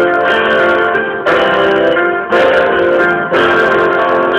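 Acoustic piano and guitar playing a slow ballad together, a new chord struck about once a second.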